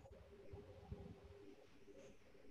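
Near silence: faint room tone with a low steady hum and a few soft low knocks.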